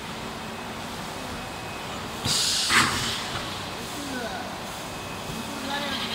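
Injection moulding machine running a 24-cavity preform mould with a steady drone. A little over two seconds in, there is a sudden short loud hiss lasting about half a second, ending in a sharp clunk as the machine moves through its cycle.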